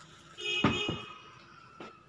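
Metal spoon clinking on a stainless steel plate while spooning in flour: a ringing clink about half a second in that dies away slowly, then a light tap near the end.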